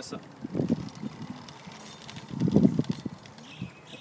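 A motorised bicycle being wheeled up onto the footpath, making irregular bumping and rattling sounds, loudest about two and a half seconds in.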